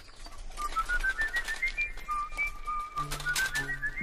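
A person whistling a quick tune of short notes, a single pure tone climbing and then falling back. Low sustained music tones come in under it near the end.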